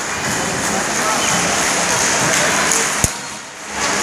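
Indistinct chatter of many voices in a large sports hall, with one sharp click about three seconds in.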